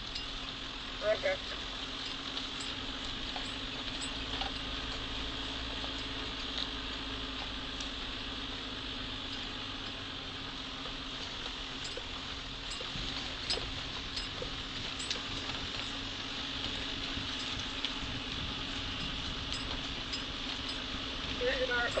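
Off-road vehicle driving along a rough dirt bush trail: a steady engine drone with a constant hum, and scattered light clicks and rattles from the vehicle and the track.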